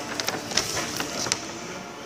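A sheet of drawing paper being handled and rustled close to the microphone, with a scatter of sharp little clicks and crinkles.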